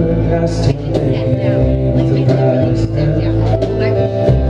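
Live indie folk-rock band playing: acoustic and electric guitars, upright bass and drums, with a man singing at the microphone.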